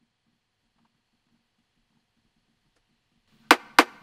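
Near silence, then two short synthesized snare hits near the end, about a third of a second apart. The snare is an Ableton Operator drum patch built from white noise over an oscillator fixed to one pitch.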